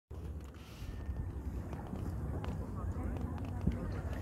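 Indistinct voices over a steady low rumble, with a few light clicks.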